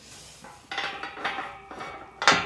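Galvanised steel field gate clanking and rattling against its post and latch as it is pushed shut, metal on metal with a ringing note; the clanks start a little under a second in.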